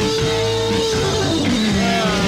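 Psychedelic blues-rock recording: a guitar holds one long note for about the first second, then slides down in pitch over the band.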